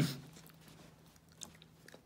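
A brief hum from a voice right at the start, then near silence in a small room, broken by a few faint small clicks.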